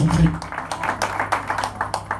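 A rapid run of sharp hand claps or taps over a steady low hum, with a man's voice briefly at the start.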